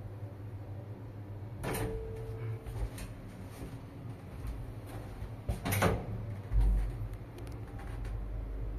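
Old two-speed traction elevator doors shutting: a sharp door bang about two seconds in followed by a short ringing tone, and a second bang just before six seconds. About six and a half seconds in a deep low hum sets in and carries on, with a few faint clicks: the elevator machine starting up for the trip.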